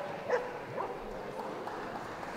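A dog yipping and barking in short calls, the loudest about a third of a second in, with fainter yips later, in a large, echoing show hall.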